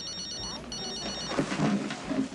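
Phone ringing with an electronic trill: two short bursts of rapid, high-pitched beeps in the first second.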